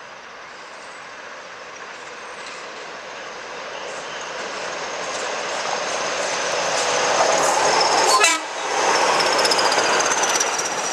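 A pair of Class 20 diesel locomotives, with their English Electric engines, hauling a flask train as they approach and pass close by, the engine and wheel noise growing steadily louder. About eight seconds in, a short falling sweep comes with a brief drop in level.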